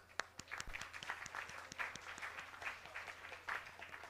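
Audience applauding with scattered hand claps.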